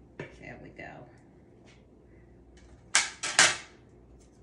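Kitchen handling noise: three short, loud rustling scrapes close together about three seconds in, as a knife is put down and the parchment paper under a cake slab is handled.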